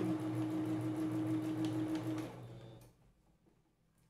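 Domestic electric sewing machine stitching steadily at speed during free-motion quilting, a steady motor hum; it slows and stops about two and a half seconds in.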